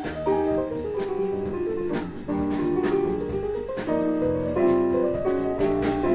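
Jazz band playing an up-tempo passage: running piano lines on a stage keyboard over electric bass, with regular drum-kit and cymbal hits.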